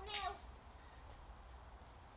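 A child's brief, high-pitched, meow-like cry right at the start, its pitch bending up and then down.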